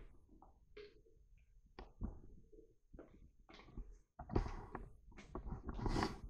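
Chopped ginger pieces are scooped by hand off a paper plate and dropped into a plastic blender cup, making scattered soft taps and rustles. They are sparse at first and come thicker and louder in the last two seconds.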